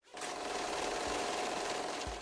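Steady buzzing of a flying bee, used as a sound effect. It starts abruptly and holds at an even level.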